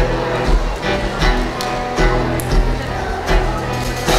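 Live band playing an instrumental passage on acoustic guitars and drums, with no lead vocal yet.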